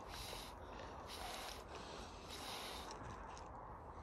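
Faint rustling, in three short swells of hiss, with no firework going off.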